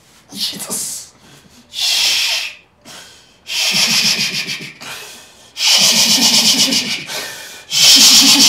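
A man's voice rapidly repeating a hissing 'shish shish shish' in bursts of one to two seconds, starting with a breathy hiss about two seconds in.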